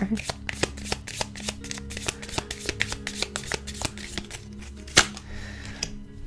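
A tarot deck being shuffled by hand, a quick irregular run of soft card clicks and flutters, with one sharper snap about five seconds in. Faint background music with held low notes plays underneath.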